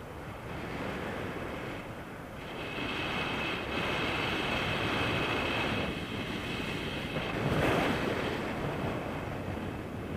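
Wind rushing over the camera microphone of a tandem paraglider in flight, swelling and easing in gusts. It is loudest about three-quarters of the way through, with a faint high whistle through the middle.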